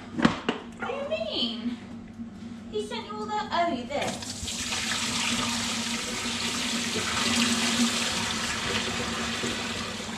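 Kitchen mixer tap turned on about four seconds in, water running steadily into a stainless steel sink.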